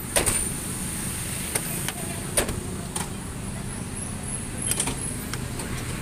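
Diesel coach engine idling steadily, with several sharp clicks and knocks over it.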